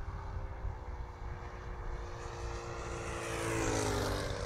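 Saito FA-125 four-stroke glow engine on a large RC P-40 Warhawk model making a low flyby. It grows louder as it approaches, and its pitch drops over the last second as it passes.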